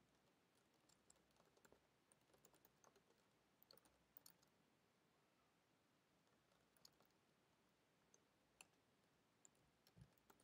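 Faint computer keyboard typing: a quick run of key clicks in the first half, then a few scattered keystrokes.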